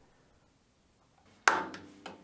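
Quiet room tone, then a sharp knock on the cello's wooden body about one and a half seconds in that rings out briefly, with a lighter second tap just after.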